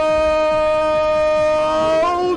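A loud held note at one steady pitch, unbroken, with a lower steady note joining it at the start, like a horn or a long sung tone.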